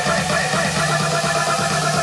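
Electronic dance music in a DJ set, in a build-up: fast repeating synth notes over a held low tone, with no kick drum or deep bass.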